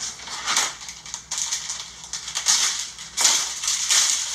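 Cookie dough being stirred by hand in a bowl with a spoon: irregular scraping, crunching strokes that come faster and louder in the second half.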